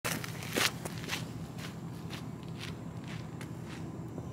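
Footsteps on gravel, about two a second and unevenly spaced, the loudest about half a second in.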